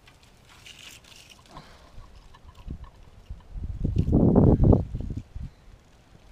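Pine branches and dry twigs of a hanging basket rustling as it is hung on a post, followed about three and a half seconds in by a loud, low, uneven rumble of wind buffeting the microphone.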